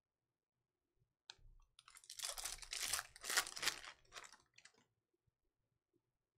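A stack of stiff chrome trading cards flipped through by hand, the cards sliding and scraping against each other in a string of short rustles. It starts about a second in and dies away near five seconds.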